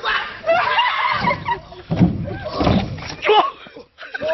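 A man bumping and rumbling down a large metal playground slide, heavy thuds from about a second in until near the end, with onlookers' excited voices over it.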